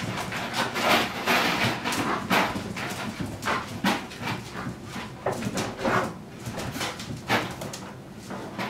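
Several puppies play-fighting on a tile floor: irregular scuffling and scrabbling with small yips and whimpers.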